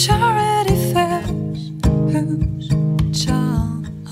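A woman singing a slow melodic line over a steel-string Takamine acoustic guitar, which is played with a capo in a steady picked pattern.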